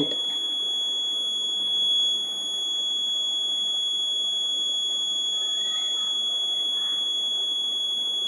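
Continuous high-pitched electronic tone, steady in pitch and level, over a faint hiss.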